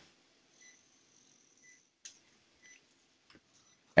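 Faint short beeps from a patient monitor, about one a second, pacing the heartbeat, with a faint click about two seconds in.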